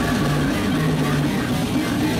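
Metalcore band playing live: heavy distorted electric guitars, bass and drums in a dense, steady wall of sound, with held low notes.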